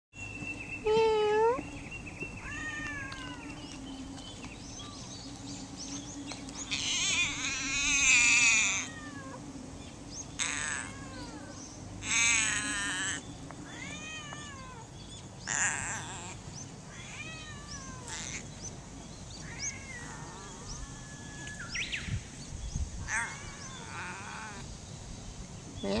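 A domestic cat meowing over and over: a dozen or so separate meows, some short and rising, the longest and loudest drawn out and wavering about seven to nine seconds in.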